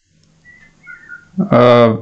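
A brief pause with a few faint, short high chirps, then a man's voice resumes speaking Tamil about one and a half seconds in.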